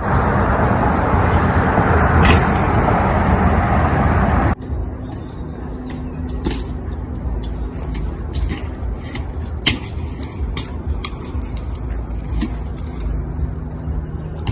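A loud, even rushing noise for about four and a half seconds that cuts off suddenly. After it comes a quieter steady hum with scattered light clicks and ticks as a mountain bike rolls over paving stones.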